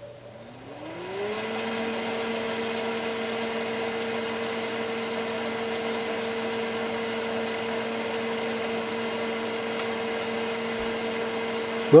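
Cooling fan of a Keithley 228A voltage/current source spinning up at power-on, its whine rising in pitch over the first second or so and then running steadily. The fan is a bit noisy.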